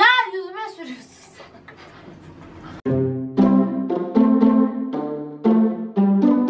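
A woman's shouting voice for about the first second, then background music starts about three seconds in: a run of held chords that change every half second or so.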